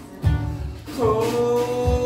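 Man singing a long held note over strummed steel-string acoustic guitar. A strum comes just after the start and the note begins about halfway through.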